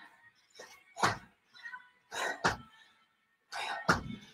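A woman doing squat jumps: short, forceful exhales, about one a second, some with a dull thud as she lands on the floor mat.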